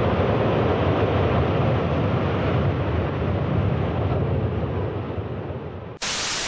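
A loud, steady, low rumbling roar, such as a tall building collapsing, fading over the last two seconds.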